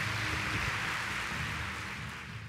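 Audience applauding steadily at the close of a speech.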